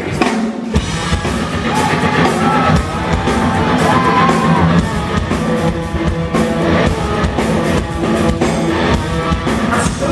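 A rock band playing live, heard from the audience: drum kit, bass guitar and electric guitar, with the full band kicking in just under a second in.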